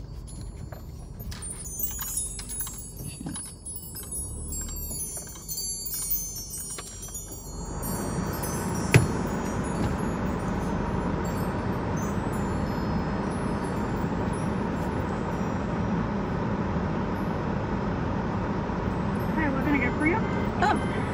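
Light metallic tinkling and jingling inside a car for the first several seconds. About eight seconds in, a steady rush of outside noise comes in as the driver's window is opened, with a single sharp click a second later.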